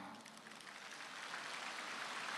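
Applause from a large audience, beginning faint and swelling steadily louder.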